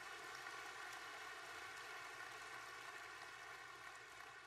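Faint, steady room tone: a hum of several held tones over a soft hiss.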